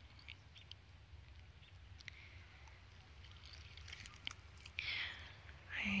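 Light wind buffeting the microphone as a steady low rumble, with faint scattered bird chirps. A short, louder soft rush comes about five seconds in.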